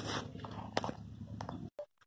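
Rustling handling noise with two sharp clicks as a tape measure is pulled out and held against the body. The sound cuts out abruptly shortly before the end.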